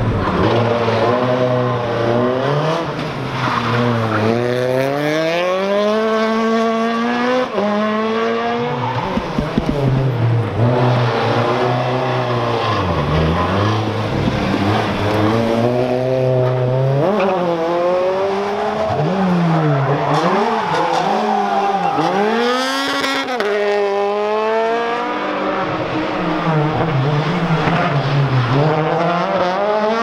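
Renault Clio RS rally cars' 2.0-litre four-cylinder engines revving hard, the pitch climbing and dropping again and again through gear changes and lifts, with some tyre squeal. About two-thirds of the way through comes a run of short, quick rises and falls in the revs.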